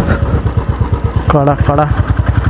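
Motorcycle engine running under the rider at low road speed, its exhaust beating at an even rhythm of about a dozen pulses a second.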